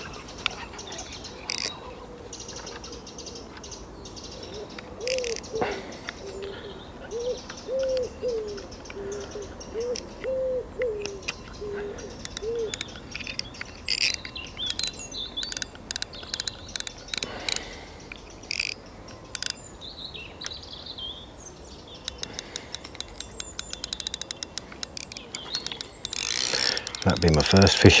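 A pigeon cooing in repeated short, low phrases through the middle, with small birds chirping faintly. There are scattered clicks and a fast run of ticking near the end, as from a fishing reel while a hooked carp is played.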